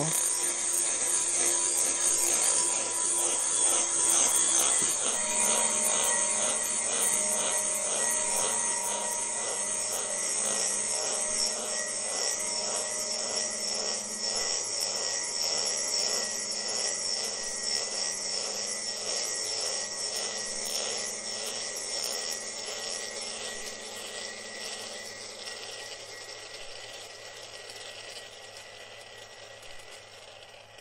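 Glass marbles swirling and rolling around the inside of a stainless-steel salad bowl, a rolling rumble with a regular pulse as they circle, while the bowl rings with several sustained tones. The sound picks up once, about four seconds in, then gradually dies away as the marbles slow and settle.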